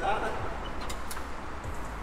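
Faint voices in the background, with two light clicks about a second in.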